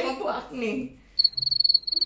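A cricket chirping: a fast, steady, high-pitched trill that starts about a second in, after a short burst of voices.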